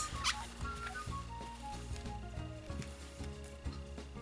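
Background music with a steady bass line. About a third of a second in, a brief squeak of a paper towel rubbed over a coaster's glossy cured resin surface, wiping oily silicone residue off with alcohol.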